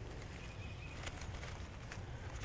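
Quiet outdoor background with a low hum and a few faint small clicks.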